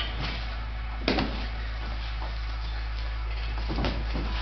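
Punches from boxing gloves landing on a sparring partner's gloves: a few sharp smacks, the loudest about a second in and another near the end, over a steady low hum.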